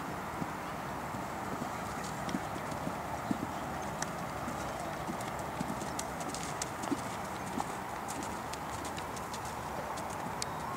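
Horse cantering on a sand arena, its hoofbeats coming as muffled, irregular thuds over a steady background hiss, with a few sharp clicks in the middle.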